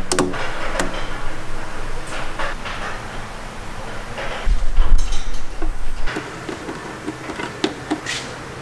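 Clicks and knocks of tools and parts being handled while a ribbed rubber intake hose is fitted between a snorkel and airbox in an engine bay, with a heavy low rumble about halfway through as the loudest sound.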